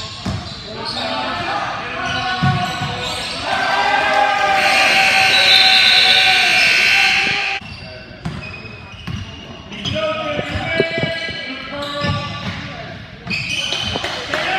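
Basketball game in an echoing gym: the ball dribbling and bouncing on the hardwood amid players' and spectators' voices. About three and a half seconds in, a loud sustained sound rises, lasts about four seconds and cuts off suddenly.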